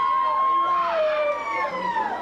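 Several high voices whooping: long overlapping calls that hold and then slide down in pitch.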